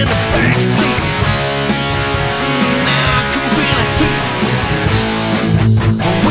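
Instrumental break of a rock song: electric guitar playing over the full band, with no vocals.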